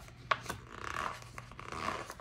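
Paper sticker sheets rustling and rubbing against each other as they are leafed through by hand, with two light ticks in the first half-second.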